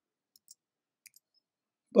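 Near silence, broken by a couple of faint, short clicks about half a second and a second in.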